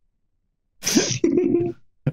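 A single sneeze nearly a second in: a sharp burst that trails off into a brief vocal sound, about a second long.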